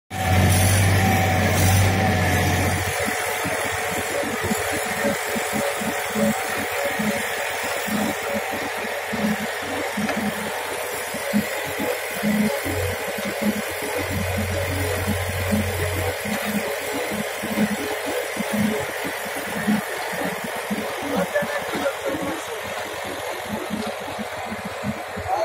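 Tractor engine running steadily under load, driving a trailer-mounted clay mixer whose auger is pushing wet clay out of its nozzle.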